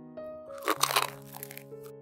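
Crunching of a crisp fried donut crust being broken open: a burst of crackles starting about half a second in and lasting about a second, over soft piano background music.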